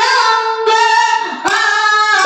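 A woman singing a Kannada folk song (dollina pada) into a microphone in long, loud, high held notes. The line breaks twice and steps up in pitch about three quarters of the way through.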